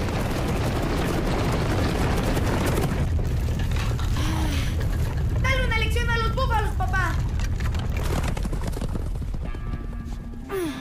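A herd of buffalo stampeding: a dense, loud, steady rumble of many pounding hooves that thins out near the end. A brief wavering high-pitched cry comes through about halfway.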